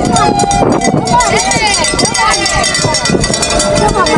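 Spectators cheering and calling out, many overlapping voices rising and falling, over a steady run of sharp taps.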